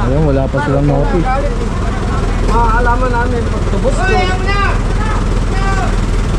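Several people talking over the steady low rumble of an idling vehicle engine.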